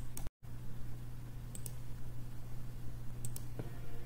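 A few sharp clicks of a computer mouse, in pairs spaced about a second and a half apart, over a steady low electrical hum. All sound cuts out briefly near the start.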